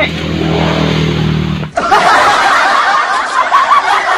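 A steady low hum that cuts off abruptly after a second and a half, followed by laughter that carries on.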